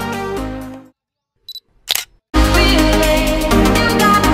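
Background music fades out, and after a moment of silence a DSLR camera gives a short high beep and then a single shutter click about two seconds in. Music with a steady electronic beat comes straight back in.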